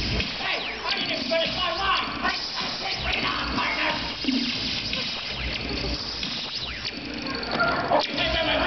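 Audience in an auditorium laughing and chattering, many voices overlapping with no single speaker standing out.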